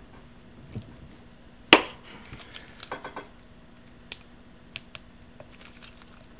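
Handling sounds at a workbench: one sharp knock about two seconds in, then a few lighter clicks and scrapes as a knife and a plastic glue pen are worked with.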